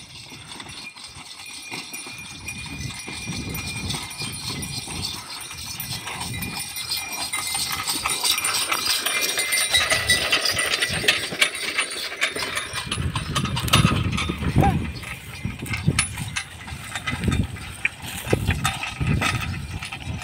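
Pair of Ongole bulls pulling a wooden spoked-wheel bullock cart across a field: hoofbeats and the rattle of the cart growing louder as it comes close, loudest about halfway through, then going on past.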